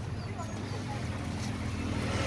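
A steady low mechanical hum, with faint voices in the background.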